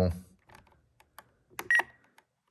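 A few faint clicks from a Spektrum NX10 transmitter's scroll wheel being worked, then a short high beep with a click near the end as the wheel is pressed to enter a letter on the on-screen keyboard.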